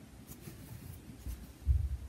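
Needle and thread being worked through fabric stretched in an embroidery hoop: faint scratching and rustling of thread and cloth under the fingers, with a dull low bump near the end.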